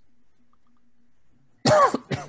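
A man coughs once, loudly and briefly, near the end, after a quiet stretch.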